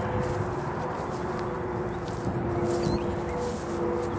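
Steady outdoor background noise with a low, even hum, and a few faint, short high chirps.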